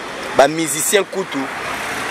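A car passing on the street, its tyre and engine noise swelling in the second half, under a few words of a man's voice.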